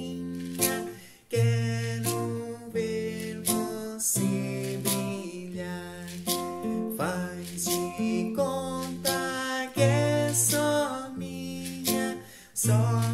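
Nylon-string classical guitar strummed in a steady rhythm, with a voice singing a melody along with it.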